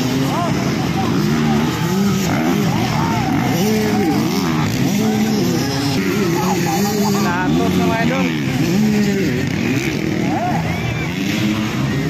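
Several dirt-bike engines revving together, their pitch rising and falling over and over.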